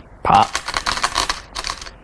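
Go stones clattering against each other in a stone bowl as a hand rummages for a stone: a quick run of sharp clicks for about a second, then a shorter second cluster.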